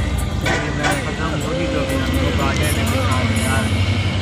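Steady low rumble of a car driving on a highway, heard from inside the moving car, with a person's voice over it from about half a second in.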